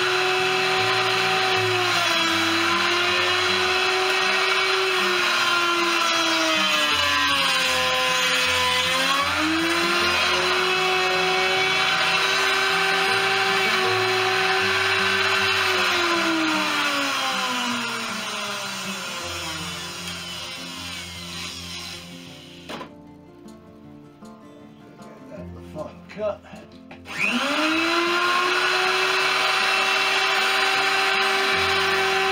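Electric hand router cutting a scarf taper along a wooden spar in a jig. Its motor whine dips in pitch twice as the bit bites into the wood, then sinks and fades away as it winds down, ending with a click. After a few quiet seconds it starts again and spins up near the end.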